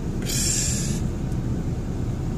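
Steady low road and engine rumble heard inside a moving car's cabin, with a short hiss in the first second.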